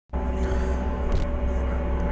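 Skid-steer loader engine running steadily, heard from the operator's seat, with a brief clank just past a second in.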